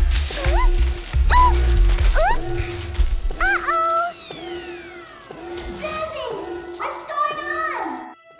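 Cartoon soundtrack: music with a heavy bass beat for the first three seconds, under short squeaky rising cries from a character, then a long falling whistle and more squeaky cries over a thinner music bed.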